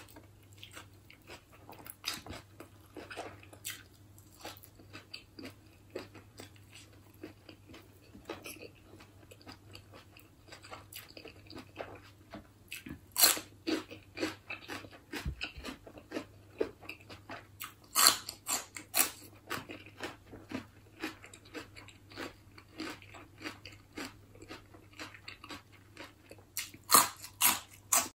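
Close-miked chewing and biting of koi hoi, a spicy apple-snail salad, with sticky rice eaten by hand: many short wet mouth clicks, with a few louder sharp ones in the second half.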